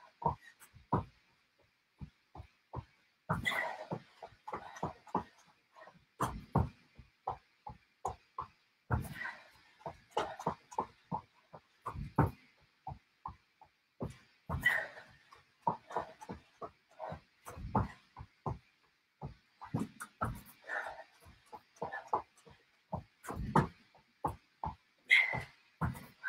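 Feet thudding on a floor mat in quick, uneven runs during high knees and mountain climbers, with a heavy breath every few seconds.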